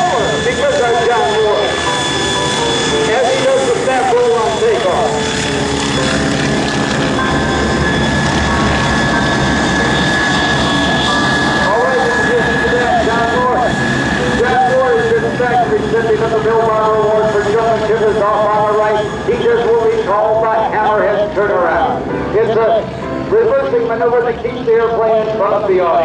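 Stearman biplane's radial engine running through an aerobatic routine, a steady drone with a voice over it.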